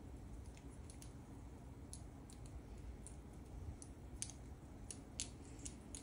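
Faint, irregular light clicks of cardboard order tokens being handled and set down on a board-game map, about ten small taps over several seconds.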